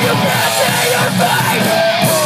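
Live rock band playing loud, dense music with a yelled vocal line over it.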